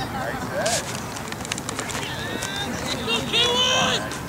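Voices of spectators and players calling across an open field, with one louder, longer call near the end.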